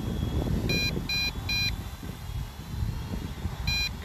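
Electronic warning beeps from a drone's remote controller, two-toned, in a quick group of three about a second in and another group starting near the end. Under them runs a steady low wind rumble on the microphone.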